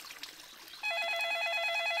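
Cartoon mobile phone ringing with an incoming call, a fast warbling electronic trill that starts about a second in.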